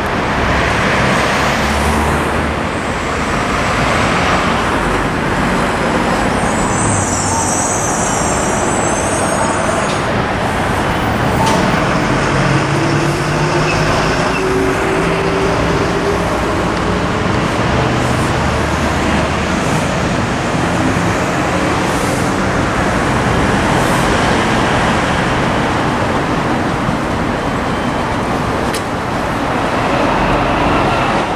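Road traffic on a city street: cars and other vehicles passing, a steady wash of engine and tyre noise, with one engine's pitch rising slowly around the middle. A brief high hiss about seven seconds in.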